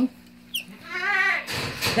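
A yearling doe goat bleating once, a wavering call of about half a second, followed near the end by a short burst of noise.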